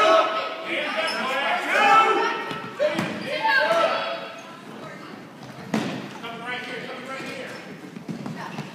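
A basketball bouncing on a hardwood gym floor, with two sharp bounces, one about three seconds in and one near six seconds. Voices call out over the first half.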